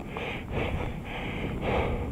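Skis gliding through soft powder snow in a run of soft swishes, with a low rumble of wind on the microphone.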